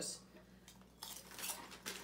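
Faint crackling from a crispy chip snack and its plastic packet, a quick run of short crisp crackles starting about a second in.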